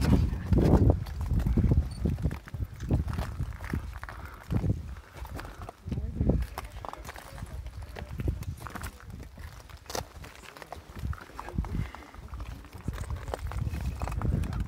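Footsteps crunching and scraping irregularly over loose, rough lava rock, with a low rumble of wind on the microphone underneath.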